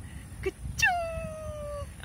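A single high-pitched voiced cry that starts sharply just under a second in and slides slowly down in pitch for about a second, with a faint click shortly before it.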